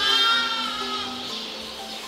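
A lamb bleating once, a long bleat that fades away over about the first second and a half, over background music.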